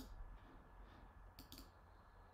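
Near silence with a few faint computer clicks: one at the start and two in quick succession about a second and a half in.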